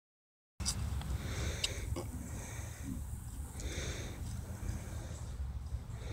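Outdoor wind rumbling on a phone microphone, with short hissing puffs about once a second, some like sniffs or breaths, and two light clicks about two seconds in.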